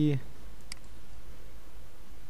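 A single computer mouse click, short and sharp, about two-thirds of a second in, over a steady low background hum.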